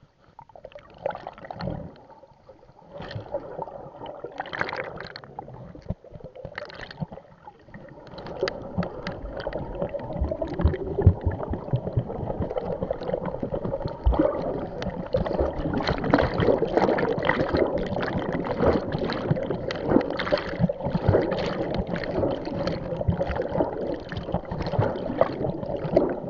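Water sloshing and gurgling close to the microphone as a person swims. Scattered splashes at first, then from about eight seconds in a louder, continuous churn of splashing.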